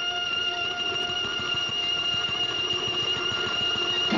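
A steady, high sustained note with overtones from the film trailer's soundtrack, held over a hiss, cutting off abruptly at the end.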